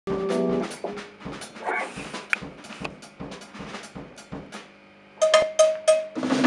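Drum kit being played in a loose warm-up: light snare and drum strikes about four a second, a brief lull, then a cluster of louder, ringing hits near the end. A short held note sounds at the very start.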